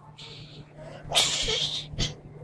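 A child's breathy vocal noise: a faint short hiss near the start, then a loud hiss of breath lasting under a second, about a second in.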